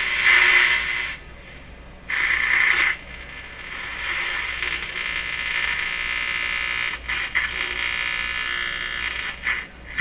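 Stewart Warner R514 tube radio's speaker giving off static hiss while it is tuned with no station coming in. The hiss cuts in and out twice in the first three seconds, then runs on steadily with faint whistling tones in it. The receiver is alive and amplifying, and only the signal is missing.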